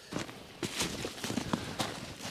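Footsteps in snow: a few short, irregular steps.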